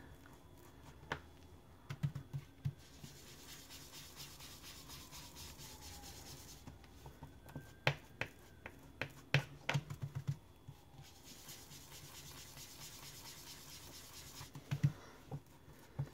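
Foam ink-blending tool rubbed over cardstock: a soft, scratchy swishing in two long stretches, broken by clusters of light taps as the tool is dabbed against the paper.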